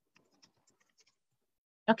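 Near silence on a video call, with a few faint scattered clicks, then a woman starts speaking just before the end.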